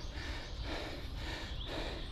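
A runner breathing hard and fast through the mouth, quick regular breaths about two a second, out of breath from running. Low wind rumble on the microphone underneath.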